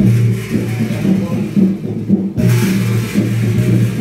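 Large hanging gong beaten repeatedly with a mallet, giving a deep ringing tone that sounds again in a steady rhythm, with voices faintly underneath.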